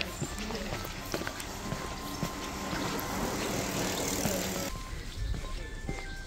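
Bicycles passing on a tarmac path: a rushing tyre noise swells over a couple of seconds and then cuts off abruptly a little before the end, with light footsteps and soft background music.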